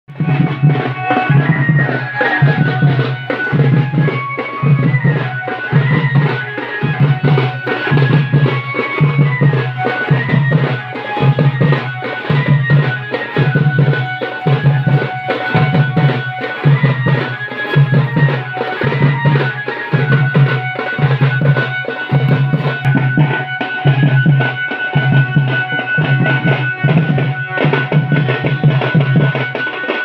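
Santali folk dance music led by deep drums beating a steady rhythm about once a second, with a higher melody line running over the beat.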